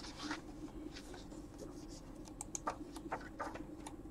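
Irregular light clicks and taps of a computer keyboard and mouse being used, over a steady low hum.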